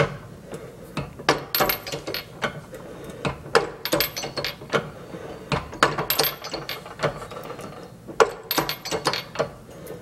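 Keyway broach being pushed through a metal bore on a ratcheting arbor press, each tooth shaving off a tiny chip: a run of sharp, irregular clicks and snaps, many coming in quick clusters, with a short pause about eight seconds in.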